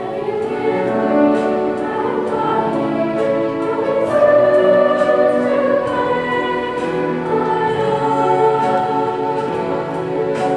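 Children's choir singing with instrumental accompaniment, held notes moving from chord to chord.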